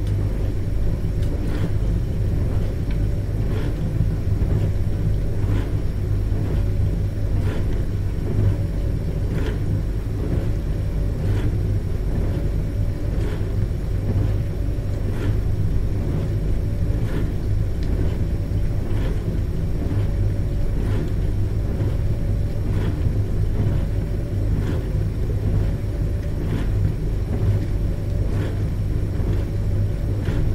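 Dishwasher running mid-cycle: a steady low hum from the pump motor under the wash of spraying water, with a faint swish repeating about every two seconds.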